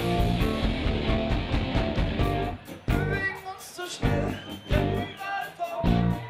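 Live rock band with trumpet, bass guitar and keyboard playing. About two and a half seconds in the band drops to short stabbed hits with voices in the gaps, then comes back in full near the end.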